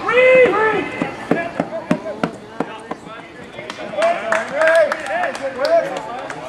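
Spectators shouting and cheering a run-scoring hit, with scattered hand claps. A loud shout comes at the start, then claps, then more calls from about four seconds in.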